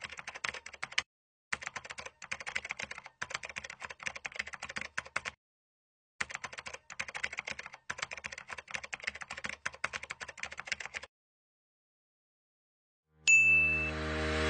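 Quick computer-keyboard typing clicks in several runs with short pauses, stopping about 11 seconds in. After a silent gap, a bright ding sounds near the end as music begins.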